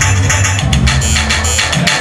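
Loud electronic music played live: a fast, even beat of sharp high percussion over a heavy bass line, the bass dropping out briefly near the end.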